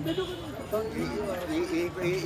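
Men talking in close conversation, with voices overlapping now and then.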